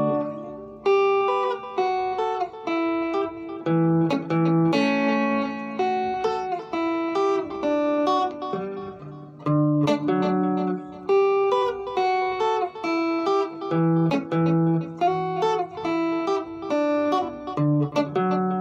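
Clean electric guitar through a small amp playing a rhythmic chord accompaniment in a kompa groove: short, choppy chords repeated in a steady pattern, with the chord changing every second or two.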